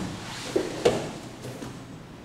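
Two short thumps about a third of a second apart as grapplers' bodies shift and come down on a foam training mat, with low scuffing of skin and clothing on the mat between them.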